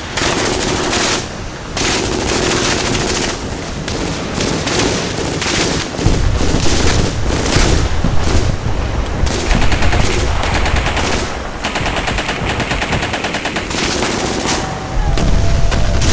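Battle soundscape of sustained machine-gun and rifle fire from recordings of World War II weapons, with one fast, continuous automatic burst about halfway through. A deep rumble runs underneath from about six seconds in and grows heavier near the end.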